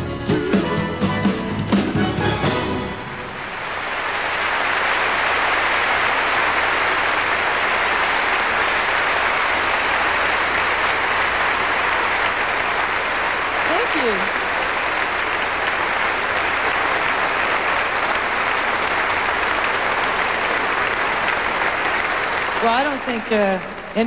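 A pop song backed by an orchestra ends about three seconds in, and a large concert audience breaks into steady applause that goes on for nearly twenty seconds, dying down as a voice starts speaking near the end.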